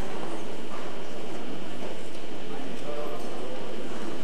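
Indistinct murmur of spectators' voices in the hall, with the hoofbeats of Lipizzaner stallions walking on the arena's sand footing.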